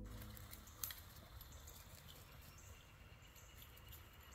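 Near silence: faint outdoor ambience with a few light clicks, one a little louder about a second in.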